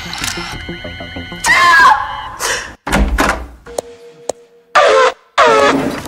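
Children's TV soundtrack: music with cartoon sound effects, including a low thunk about three seconds in, then a short steady tone with two sharp clicks.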